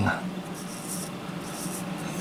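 Faint rubbing and scuffing of hands handling a metal flashlight.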